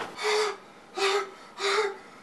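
A man's voice making short, breathy, high-pitched vocal sounds, three in a row at an even pace about half a second apart.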